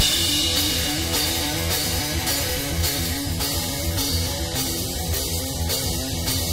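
Live hard rock instrumental passage: a distorted electric bass plays a repeating riff over a steady drum kit beat, with no vocals.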